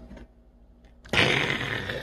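A glass lid lifted off a stainless steel pot: a sudden rush of noise begins about a second in.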